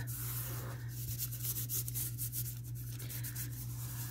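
Fingers rubbing a strip of homemade napkin washi tape down onto paper: a faint, dry rubbing with a few small scratchy ticks. A steady low hum runs underneath.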